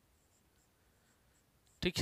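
Faint squeak and rub of a marker writing on a whiteboard. A man's voice starts near the end.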